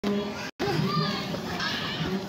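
Several children's voices chattering and calling out over one another. The sound cuts out completely for an instant about half a second in.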